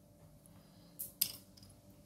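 A wooden graphite pencil set down on a hard desk, giving two quick hard clinks about a quarter second apart, the second louder.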